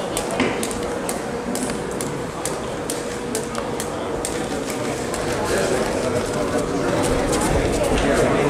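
Jump rope slapping the ring canvas in a quick, slightly uneven rhythm of about three sharp slaps a second, over a murmur of voices.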